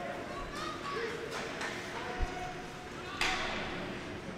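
Ice hockey arena sounds during live play: skating on the ice with faint distant shouts echoing in the rink. There is a low thump about two seconds in and a short scraping hiss a little after three seconds.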